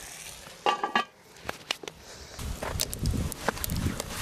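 A cast-iron pot lid clinking as it goes onto the pot, then several light knocks of metal on metal. A low rumbling noise runs through the last second and a half.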